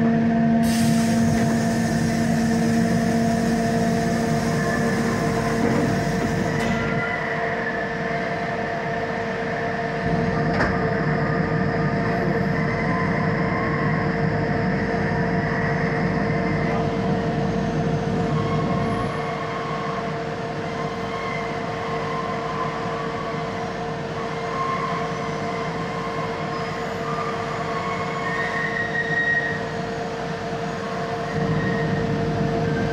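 An electric locomotive passing, then a long freight train of low wagons loaded with lorries rolling steadily past, with intermittent high squeals from the wheels. A humming tone from the locomotive fades after about six seconds as it moves on.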